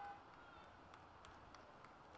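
Near silence: faint outdoor background with a few faint ticks.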